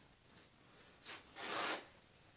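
A paper towel being torn off a roll: two short ripping bursts just past a second in, the second longer and louder.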